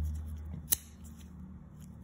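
One sharp metallic click about two-thirds of a second in, as the blade of an Olamic WhipperSnapper sheepsfoot folding knife snaps shut in the handle, over a steady low hum.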